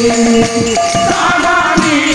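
Odia Pala folk singing: voices hold a long sung note, and a higher voice comes in about a second in, over strokes of a two-headed barrel drum and bright jingling percussion.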